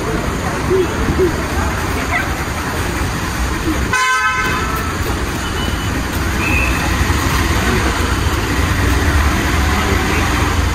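Busy kerbside traffic noise: a steady rumble of vehicles with scattered voices, and a short car horn toot about four seconds in.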